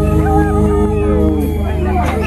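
Live band holding a steady chord while voices whoop and cry out over it in gliding calls.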